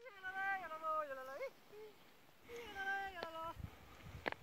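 Two drawn-out, wavering voice-like calls, each lasting about a second or more, with a brief faint one between them and a sharp click near the end of the second.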